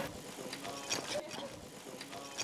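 Faint, indistinct voices in the background, with a few light clicks around the middle.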